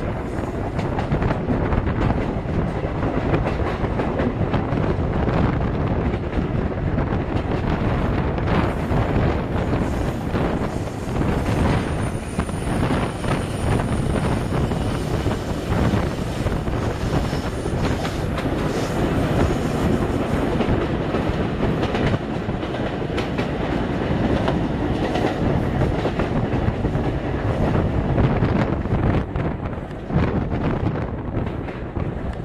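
Loud, steady rumble of a moving passenger train heard from an open coach window, with wheels clattering over rail joints in frequent knocks as electric-hauled trains pass on the next track. A faint high whine rises briefly near the middle.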